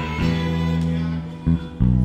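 Live instrumental worship music: violin and electric guitar over low bass notes, holding sustained chords, thinning briefly about a second and a half in.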